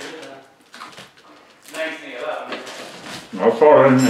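A man's voice making unclear or wordless vocal sounds, in two stretches, the second louder and ending near the end.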